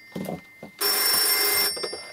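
A telephone ringing: one ring burst just under a second long, starting about a second in, with a steady high metallic ring that fades after it.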